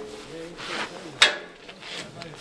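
Heavy armoured steel rear door of a BMP swung open by hand, with rubbing from the hinge and latch and one sharp metallic clunk about a second in.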